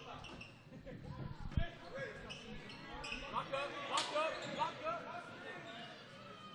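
A basketball being dribbled on a hardwood gym floor, with indistinct voices echoing in the large hall and a sharp knock about four seconds in.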